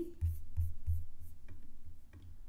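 A low, uneven hum with a few faint clicks and light rubbing sounds.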